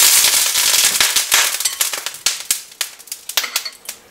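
Water sizzling and spattering in a hot oiled nonstick pan: a loud hiss that breaks up into scattered crackles and pops, growing sparser and quieter toward the end.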